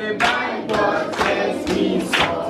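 A classroom of schoolchildren singing together and clapping in time, about two claps a second.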